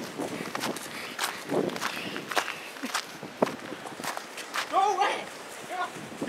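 Running footsteps crunching through packed snow, an irregular series of sharp crunches, with a short shout about five seconds in.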